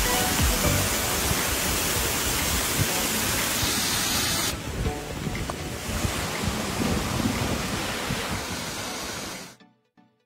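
Water rushing through a canal lock's sluice into the lock chamber, a loud steady rush. About halfway through it turns duller and quieter, then fades out shortly before the end.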